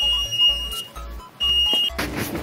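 Metro automatic fare gate beeping: a high, steady electronic beep that cuts off a little under a second in, then a second, shorter beep of the same pitch later on.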